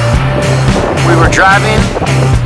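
Background rock music with a steady bass beat; a wavering sung vocal line comes in about halfway through.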